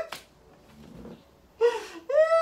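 A man catching his breath between bursts of laughter: a gasping intake of breath at the start, a faint breath in the middle, and a short high voiced laugh sound near the end.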